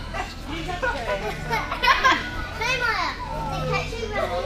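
Children's voices: high-pitched chatter and squeals that sweep up and down in pitch, over a low steady hum.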